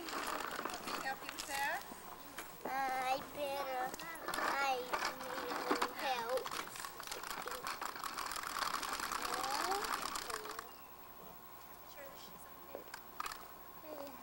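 A child's bicycle with training wheels rolling over pavement: a steady, fast clicking rattle that stops abruptly about ten and a half seconds in. A high voice calls out over it for a few seconds in the first half.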